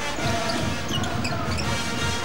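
Live basketball game sound from the arena: crowd noise with a basketball being dribbled on the hardwood court and short squeaks, likely sneakers on the floor.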